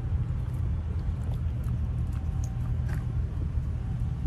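Steady low background rumble, with a couple of faint clicks.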